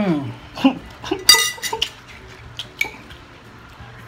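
Metal forks clinking and scraping against ceramic plates while eating noodles, with one bright ringing clink about a second and a half in and a few lighter ticks after it. A man's hummed "hmm" of enjoyment, falling in pitch, opens it.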